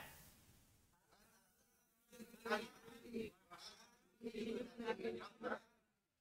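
Faint voices of learners repeating the Arabic drill phrase after the teacher, in a few short bursts starting about two seconds in.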